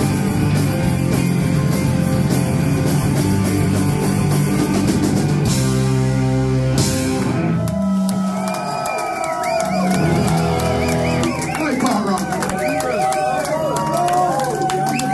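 Live rock band with electric guitars and drum kit playing loud, ending the song on a held, ringing chord about six seconds in. Afterwards the crowd cheers and shouts while a guitar is picked between songs.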